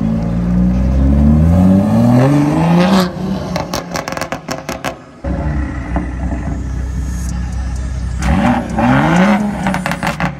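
BMW M coupe's engine revving hard while the car slides, its pitch climbing for about three seconds. A string of sharp pops follows as the throttle lifts, then the engine revs up again near the end.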